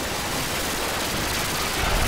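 Steady, dense hiss-like noise filling the whole range, with no clear tone or rhythm, like heavily distorted audio.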